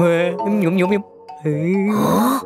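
Cartoon bunny character's wordless vocal sounds, two short pitch-wavering utterances, the first lasting about a second and the second starting about halfway through, over light children's background music.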